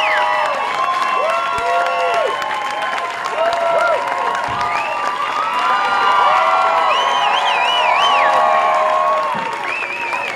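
Club audience applauding and cheering, with scattered shouts and whoops over the clapping and a high wavering call about seven seconds in.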